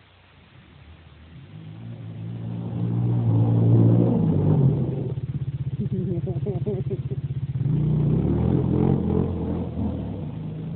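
Drift car's engine revving hard as the car approaches, growing louder over the first few seconds and loudest about four seconds in, then holding high revs with a fast, even pulsing through the second half.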